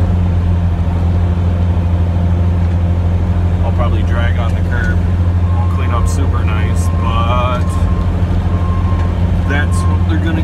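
Snowplow truck's engine running with a steady low drone, heard from inside the cab while the truck pushes snow with its front plow.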